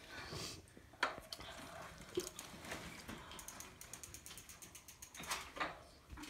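Mountain bike's rear freewheel ticking in a rapid run of clicks as the bike rolls and coasts, with a single knock about a second in.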